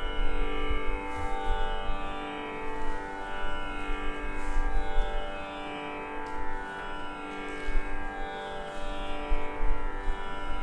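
Tanpura drone sounding on its own, with no voice: a steady chord of sustained strings whose shimmering overtones sweep downward every second or two as the strings are plucked in turn.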